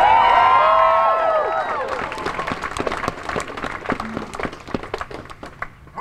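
A crowd cheering and whooping, many voices at once, loudest at the start. About two seconds in it turns to clapping that slowly thins out and fades.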